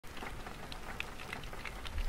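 Rain falling on a window, with many separate drops ticking on the glass over a steady hiss. A low rumble swells near the end.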